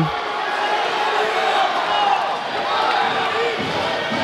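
Arena crowd noise: a steady hubbub with scattered shouted voices from around the cage.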